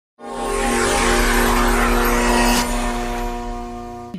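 Radio station's intro jingle: a held synth chord under a rushing whoosh and low rumble that swells in at the start. There is a short hit about two and a half seconds in, and then it fades away.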